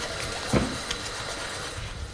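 Tap water running steadily into a bathroom sink basin as hands are washed under it, with one short louder sound about half a second in.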